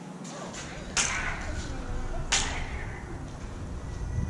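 Lightsaber sound-font clash effects from sparring sabers: two sharp crashing hits, about a second in and again just over a second later, each fading out, with a low steady hum underneath.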